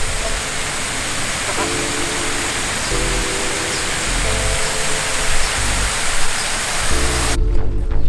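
Steady rushing water of a fountain's water wall and pond, with background music of held chords and a low beat over it. The water noise cuts off suddenly near the end.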